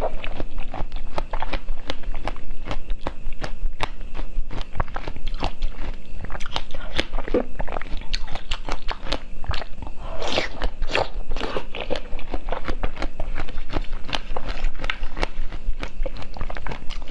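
Pomegranate arils being bitten and chewed close to the microphone: a dense, continuous run of wet crunches and crackles, a little louder about ten seconds in.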